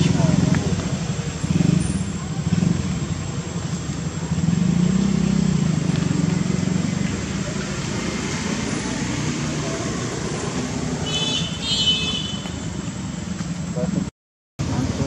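Indistinct background voices of people talking, with a steady low hum like a vehicle engine under them. A brief high-pitched chirping call comes in about eleven seconds in.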